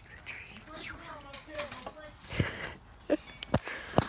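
Faint, indistinct talk, then a few short sharp knocks in the second half.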